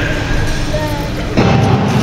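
Start of a short-track speed skating race in an echoing arena: a tense pause at the ready, then the starter's signal goes off suddenly about one and a half seconds in, a loud burst with a held tone.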